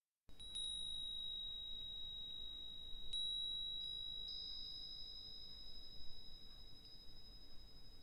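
Small high-pitched chime bells struck a few times: two strikes close together at the start and another about three seconds in, each clear ringing tone held and slowly fading. A second, slightly higher tone joins about four seconds in.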